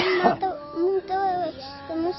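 A child's voice singing a slow melody in held, wavering notes broken into short phrases, with a brief noisy burst at the very start.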